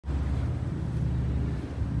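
An engine running steadily with a low, even rumble.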